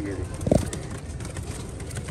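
Domestic pigeons cooing low and steadily, with a single short low thump about half a second in.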